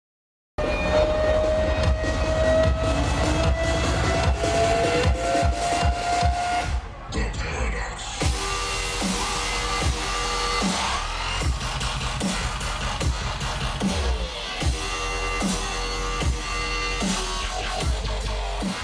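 Dubstep DJ set played loud over a festival sound system: a rising build-up, a brief muffled break about seven seconds in, then the drop with a heavy, steady beat from about eight seconds.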